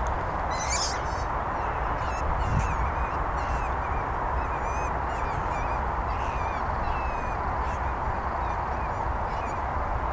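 Birds chirping and twittering in short, wavering calls, with one louder, harsher call about half a second in, over a steady background rumble and hiss.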